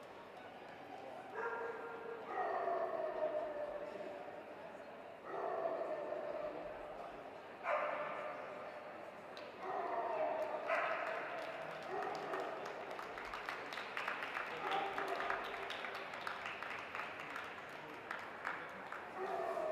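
A dog's drawn-out vocal calls, repeated about eight times. Each call lasts a second or two and slides slightly down in pitch, over a murmur of indistinct voices.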